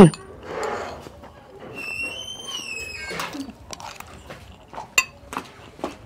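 Scattered light clicks and clinks of a utensil against dishes as someone eats. About two seconds in, a high thin tone rises slightly and lasts just over a second.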